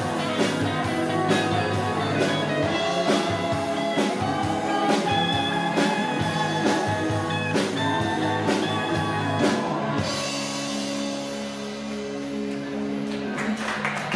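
Live rock band playing: electric guitars, bass, drum kit and keyboard with a male lead vocal, on a steady beat. About ten seconds in, the drums stop and a held chord rings on, more quietly.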